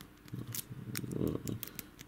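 A lock pick being raked in the pin-tumbler keyway of a brass padlock: faint, scattered metallic clicks and ticks as the pick scrapes over the pins, a few close together near the end.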